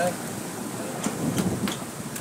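Steady rushing noise of sea water and wind around a fishing boat, with a few sharp clicks past the middle and a low voice under it.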